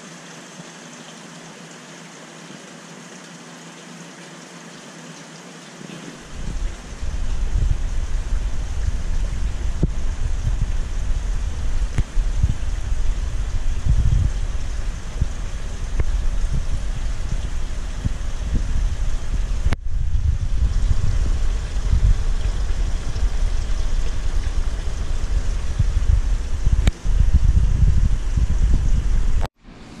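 Wind buffeting the camera microphone: a loud, uneven low rumble that starts about six seconds in, over faint room tone, and stops abruptly near the end.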